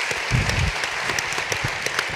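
Audience applauding, a steady patter of many hands clapping, with a brief low thump about half a second in.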